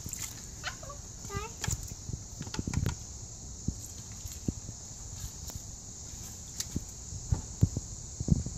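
A small child's voice briefly in the first second and a half, then scattered light taps and knocks from children's plastic scoops and a metal strainer being handled at a backyard kiddie pool.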